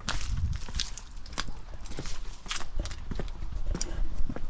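Footsteps on dry fallen leaves and bare ground: a run of irregular short crunches over low rumble.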